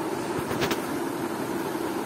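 Steady background hum and hiss of room noise, with two brief clicks about half a second in.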